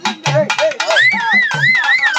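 Live karagattam folk music: barrel drums beat a fast, even rhythm of about three or four strokes a second. About a second in, a high, steadily wavering melody line comes in over them.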